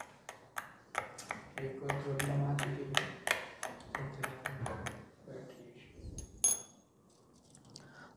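A hot fusion tube being crushed with a rod in a small porcelain dish of water: a quick run of sharp glass clicks and cracks, then one clear ringing ping near the end.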